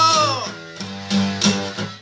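A man singing and strumming an acoustic guitar. A held sung note bends down and fades about half a second in. After that the guitar plays chords alone.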